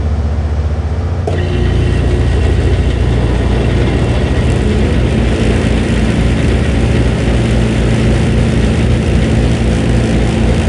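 2005 Trane Odyssey 15-ton heat pump starting up in heat mode: a steady low hum, then a click about a second in, after which more of the unit comes on and its running noise grows louder and fuller, with a rush of air over the hum.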